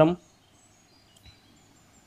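A voice ends a word, then a pause with faint background noise and a few brief, faint high-pitched chirps.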